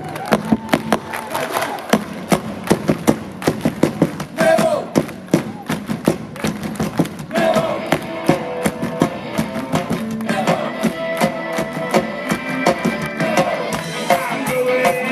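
A live ska band playing the start of a song through the outdoor PA, with the crowd clapping along in dense, sharp claps. Held notes from the instruments come in about seven seconds in.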